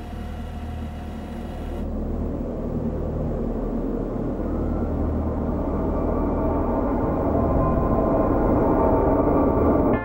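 A low rumbling drone over a steady hum, swelling steadily louder and cutting off abruptly at the end.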